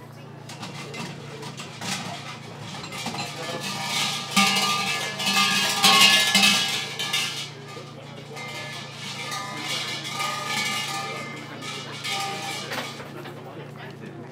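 Large shrine bells (suzu) shaken by their hanging ropes: repeated metallic jangling and ringing that swells to its loudest in the middle, over the murmur of voices.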